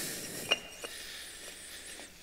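Concrete stair tread being nudged into place on concrete wall blocks, stone on stone: a sharp clink about half a second in and a fainter one shortly after.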